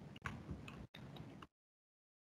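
Faint computer keyboard typing: a few soft key clicks, then the sound cuts to dead silence about one and a half seconds in.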